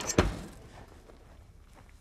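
An oven door being shut, a single low thud just after the start.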